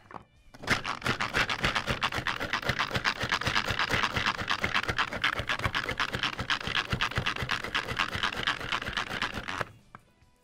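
Pampered Chef manual food processor, a pull-cord chopper, worked by repeated pulls of its handle so the blades spin and chop shallots and garlic in the plastic bowl. It makes a fast, even run of scratchy strokes that starts just under a second in and stops shortly before the end.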